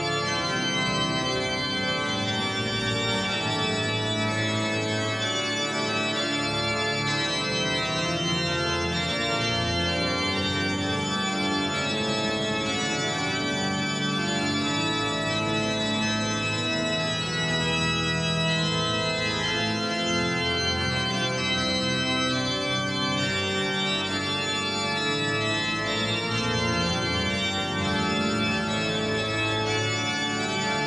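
Pipe organ playing slow, sustained chords that shift every second or two, in a large cathedral.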